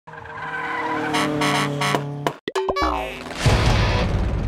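Intro sting of music mixed with car sound effects: held chords for about two seconds, a brief cut-out, a falling tyre-screech-like glide, then a loud, low engine sound.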